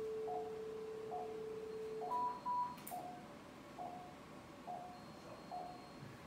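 Operating-room electronic beeps: a short pulse-tone beep repeating a little under once a second, typical of a patient monitor's heartbeat tone. Over it, a laparoscopic energy device's steady activation tone runs until about two seconds in and ends with two short higher beeps, then a click.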